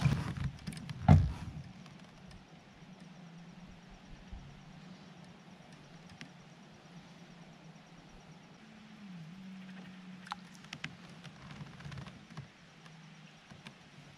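A single knock about a second in, like gear striking a kayak hull, then faint scattered clicks and taps of rod and line handling over a steady low hum as a bass is brought alongside.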